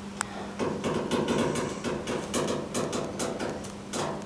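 Inside an elevator car: a sharp click, then a run of irregular knocks and rattles for about three seconds over a steady low hum.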